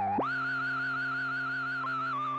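Moog Subsequent 37 synthesizer playing a held note: the filter's self-oscillation, overdriven so it gains overtones, sounds as a high tone wavering with vibrato over a steady, bass-heavy oscillator drone. About a fifth of a second in, the high tone glides quickly up to a new pitch and holds.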